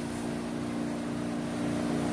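Steady low hum of a running household appliance, several even tones over a faint hiss.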